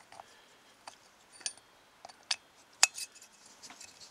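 Irregular sharp metallic clinks, a couple ringing briefly, as the old exhaust valve of a Royal Enfield 500 unit engine is slid into its worn valve guide in the cylinder head and knocks against the head; the loudest comes a little under three seconds in.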